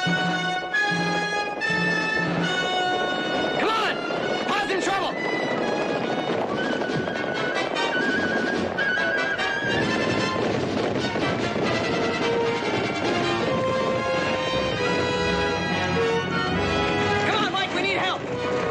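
Orchestral western score playing loudly over a group of galloping horses, with horses whinnying a few times about four seconds in and again near the end.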